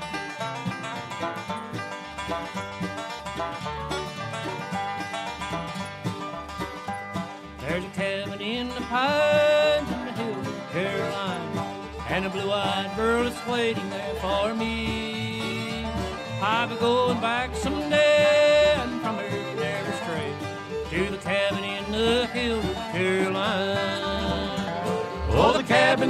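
Bluegrass band playing an instrumental passage: banjo and guitar over a steady, evenly pulsing bass, with a lead instrument playing sliding notes from about eight seconds in.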